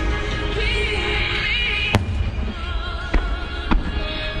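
Aerial fireworks shells bursting: one sharp bang about two seconds in, then two smaller bangs near the end, over music with a singer's wavering voice.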